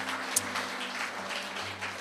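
A congregation applauding over soft instrumental music holding a steady low chord.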